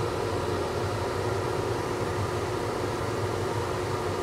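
Steady hiss of a running blower fan with a low, even hum underneath.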